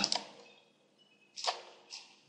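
Two computer mouse clicks: a sharper one about one and a half seconds in and a fainter one near the end.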